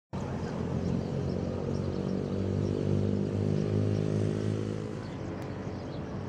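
A motor vehicle's engine going by on the street, a steady low hum that fades away about five seconds in.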